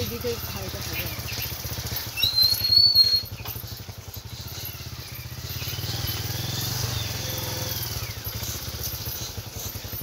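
A motorbike engine running steadily at low revs, a low rumble with a fast even pulse. A short high whistle sounds over it about two seconds in.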